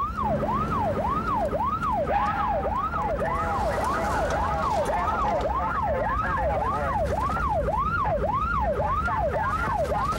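Police car siren in fast yelp mode, its pitch sweeping up and down about two to three times a second, over the engine and road noise of the patrol car in pursuit.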